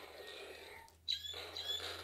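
Iron Man Arc FX toy glove's small speaker playing its electronic repulsor sound effect about a second in, high tones sliding downward, set off by pressing the glove's button.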